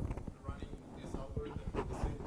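Faint, distant speech of an audience member asking a question away from the microphone, in a room that echoes.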